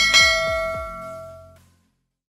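Notification-bell 'ding' sound effect of a subscribe-button animation: one bright chime that rings and fades out over about a second and a half, with a few quick falling tones beneath it in its first second.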